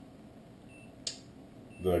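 A single sharp click about a second in over quiet room tone: the Safecast Onyx Geiger counter's count indicator registering one count at background radiation level.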